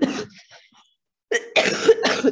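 A woman coughing: the tail of one cough at the start, then a run of harsh coughs from about one and a half seconds in.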